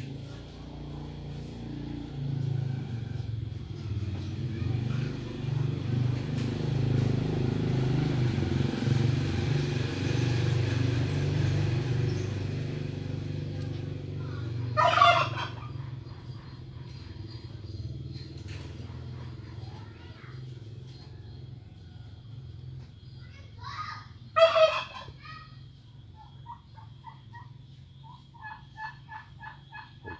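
Male turkey gobbling twice, short loud rattling calls about halfway through and again near the end. A low rumble swells and fades under the first half, and a few faint short calls follow near the end.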